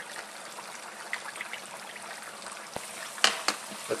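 Potato strips, jalapeno slices and onion rings deep-frying in hot peanut oil: a steady sizzling hiss with small crackles. A few sharp clicks come near the end.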